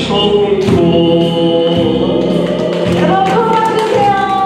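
A man singing a Korean trot song into a microphone over an instrumental accompaniment, holding long sustained notes.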